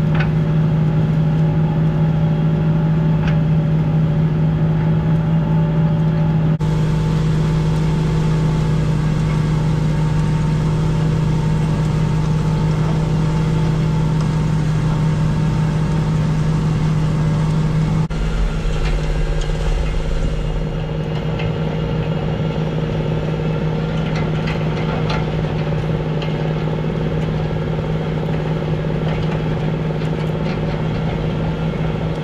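John Deere 8530 tractor's six-cylinder diesel engine pulling a deep subsoiler under heavy load, a loud, steady drone. Its tone changes abruptly twice, about a third and about two-thirds of the way through.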